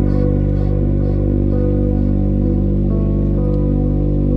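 Live-looped melodic techno: a steady low bass drone held under quieter synth notes from a Roland Juno-106 analog synthesizer, with no clear beat.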